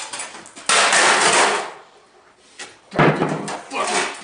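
A computer being smashed apart: a sudden crash lasting about a second, then a sharp bang about three seconds in.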